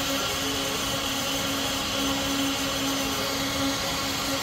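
A steady mechanical hum with one constant low tone over an even hiss, unchanging throughout.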